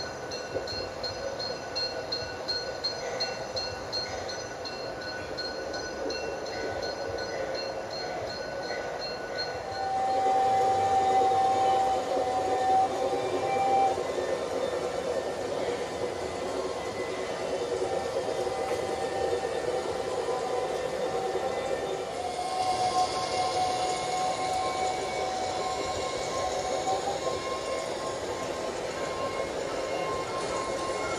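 LGB G-scale model trains running on the garden layout: an even running sound of motors and wheels on the rails. From about ten seconds in, a steady higher tone comes in for a few seconds at a time.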